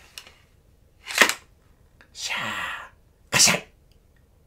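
Three short hissing swish sounds, like sword swings: one about a second in, a longer one with a falling low tone around two seconds in, and a short one near the end.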